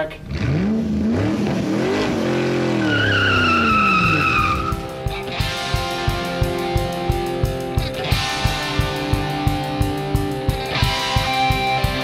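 An engine revving up and back down, with a tyre squeal over it, then rock music with a steady drum beat taking over about five seconds in.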